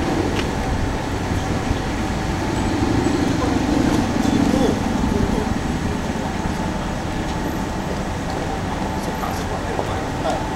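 Urban street ambience: a steady wash of road traffic noise with indistinct voices of people around. It swells louder for a couple of seconds about three seconds in.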